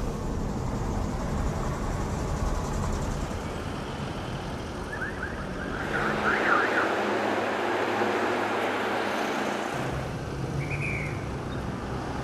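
Street traffic noise from congested roads: a steady rumble of engines and tyres, with a cluster of short high chirps about halfway through and a brief high beep near the end.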